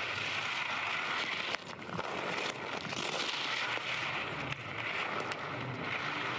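Giant slalom skis scraping and carving on the hard-packed race slope: a steady scraping noise that dips briefly about one and a half seconds in.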